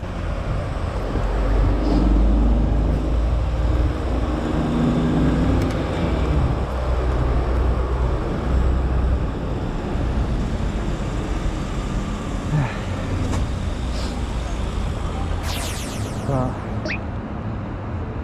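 City road traffic heard from among moving cars and a bus: a steady, low, heavy rumble of engines and tyres. A few brief high-pitched sweeping sounds come near the end.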